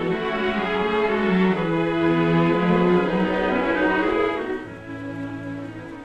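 Orchestral film score with bowed strings playing sustained notes, swelling and then fading near the end.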